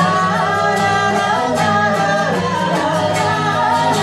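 Live band music: women singing with acoustic guitar and strummed sanshin over a steady beat.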